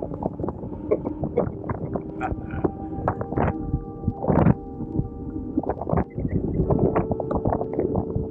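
Wind rushing over the microphone and knocks from the road as an e-bike is ridden, with a steady whine from the Swytch kit's hub motor under power that changes pitch every few seconds.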